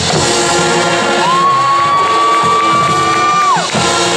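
High school marching band playing a held chord, with a high note that slides up about a second in, holds for about two seconds, then falls away near the end, as the crowd cheers.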